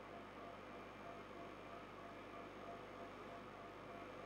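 Very quiet room tone: a steady low hum and hiss, with a faint tone pulsing a few times a second.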